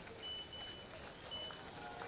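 Faint outdoor background noise with a high, steady electronic beep that sounds twice, the first for more than half a second and the second briefly.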